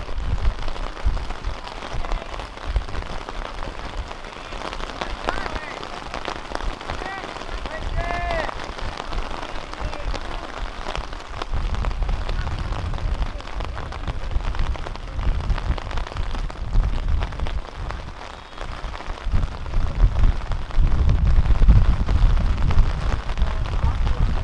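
Rain falling around the microphone as a steady hiss, with a few distant shouts from the field. A low rumble on the microphone grows louder over the last few seconds.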